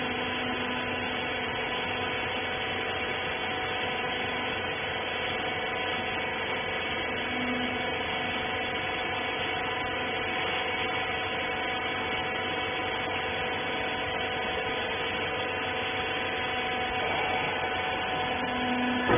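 Wiper rag baler's hydraulic power unit running steadily: a constant hum with several steady tones over a noise bed.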